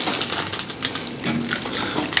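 Crackling, rustling handling noise of hands and clothing moving against a clip-on microphone while a person's neck is being handled, with many fine clicks.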